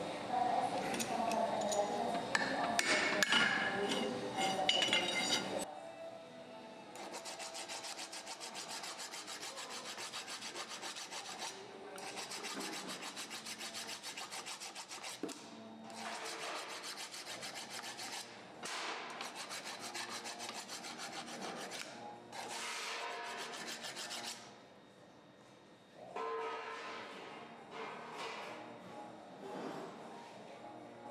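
A flat hand file rasping against the end of a steel pipe as it turns in a Ridgid 300 power drive, in a long run of fine, even strokes with short breaks. The first few seconds hold louder metal clinks and clanks.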